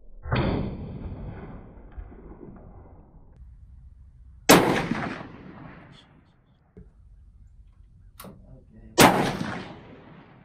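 Three rifle shots from a scoped precision rifle, about four and a half seconds apart, each trailing off over about a second; the first is duller than the other two. They are the zero-confirmation group fired before dialing up the elevation turret.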